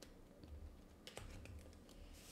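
Near silence with a few faint clicks and taps of cards being handled on a table, a couple of them about a second in.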